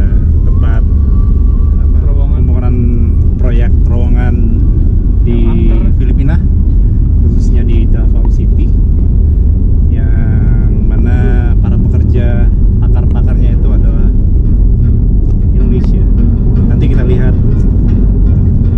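Steady low rumble of a car on the move, heard from inside the cabin, with men's voices talking over it.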